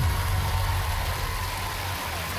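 Studio audience applause: a dense, steady wash of clapping noise with a heavy low rumble beneath it.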